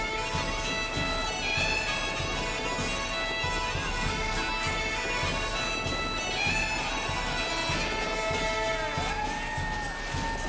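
Bagpipe music over a steady drumbeat.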